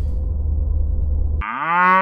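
A deep bass note left over from the electronic music holds. About one and a half seconds in, a cow's moo starts: one long call that rises briefly at the start and then holds steady.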